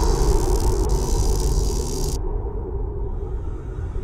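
Cinematic intro sound effect: a deep rumble overlaid with a loud hiss that cuts off suddenly about two seconds in, after which the rumble dies away slowly.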